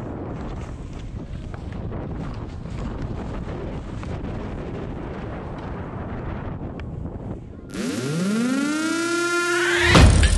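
Wind rushing over the microphone of a helmet camera during a downhill ski run. A little under eight seconds in it cuts off abruptly to a rising, siren-like synth sweep that levels out and leads into music.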